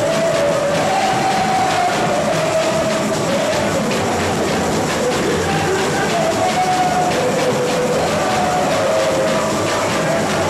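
Live samba-enredo: a samba school's percussion playing steadily with singing voices carried over it, held long notes rising and falling, loud and continuous.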